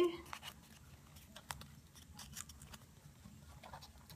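Faint rustling and crinkling of folded origami paper being handled, with scattered soft clicks as a paper flap is worked into a slot of the modular cube.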